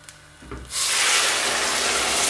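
Hot water poured onto rice toasting in butter and oil in a hot pot: a sudden loud sizzling hiss starts about half a second in and holds steady as the water boils up.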